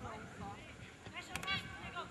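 Faint, distant voices of football players calling out across the pitch, with a brief sharp click about a second and a half in.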